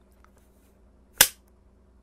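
A film clapperboard snapped shut once, a single sharp clap about a second in, marking the start of the take.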